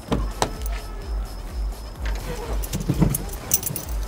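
A car door clicks open and someone climbs into the driver's seat, with keys jangling in the second half as the key goes toward the ignition. Background music with a steady bass beat about twice a second plays throughout.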